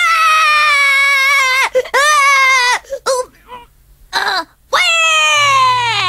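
A young boy's voice wailing loudly in three long cries that fall in pitch, with a few short sobs between them: a put-on crying fit, faked to get his way.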